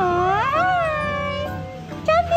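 Siberian husky vocalizing: a long, wavering whine-howl that dips in pitch and then rises, held for about a second and a half before fading, over background music.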